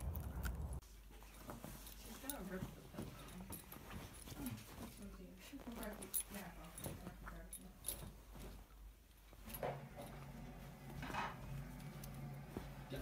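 Muffled voices in the background while a beagle digs and noses at a blanket on a bed, with soft rustling and scratching of the fabric. Under the first second there is low wind rumble on the microphone that cuts off suddenly.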